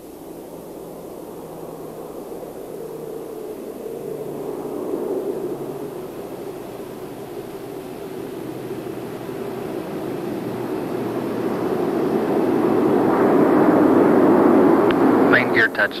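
A rushing roar of air that swells steadily as the Space Shuttle orbiter Columbia glides in low and unpowered to land. It is loudest just before main-gear touchdown.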